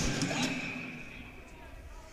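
Quiet ice-rink ambience. A faint steady high tone fades out over the first second and a half, leaving a low hollow hum.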